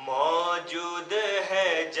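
A solo male voice reciting a salam, a devotional Urdu poem, unaccompanied, in a melodic chanting style with short held phrases.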